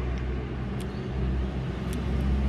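Steady low hum of a motor vehicle's engine running, with a couple of faint brief ticks.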